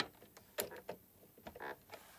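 Faint clicks and taps of a walking foot's clasps being fitted around a sewing machine's presser bar: a few small knocks about half a second and a second in, and again near the end.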